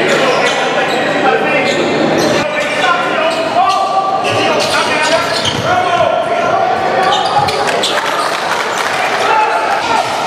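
A basketball bouncing on a hardwood gym floor in live game play, the bounces echoing around the hall, with voices of players and onlookers throughout.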